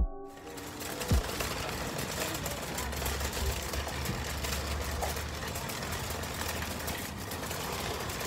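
The end of an electronic intro tune, with a falling pitch sweep about a second in. Then steady, rough rushing noise on an outdoor handheld phone microphone, with a low rumble through the middle.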